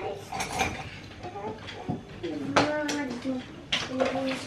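Scattered clinks and knocks of dishes and mugs on a breakfast table as people help themselves from a shared plate, with short snatches of quiet talk.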